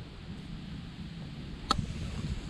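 Steady low outdoor rumble, with one sharp click near the end.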